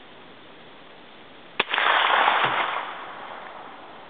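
A single 9 mm pistol shot about one and a half seconds in, followed by a loud rushing noise that fades out over about a second and a half.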